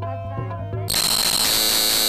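Tabla and harmonium folk music that cuts off abruptly about a second in, replaced by a louder, steady buzzing hiss with a high whistle in it: an edited transition sound effect over the cut to a blank screen.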